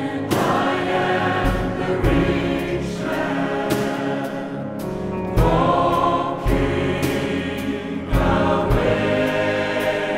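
A mixed choir singing a slow, hymn-like song in several voice parts, accompanied by piano, with a soft stroke marking the beat about once a second.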